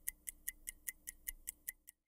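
Clock-ticking sound effect, fast and even at about five ticks a second, growing fainter near the end.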